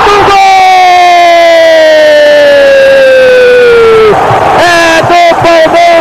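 Brazilian TV football commentator's long goal shout: one held note for about four seconds, sliding slowly down in pitch, over a cheering stadium crowd. Shorter shouted calls follow near the end.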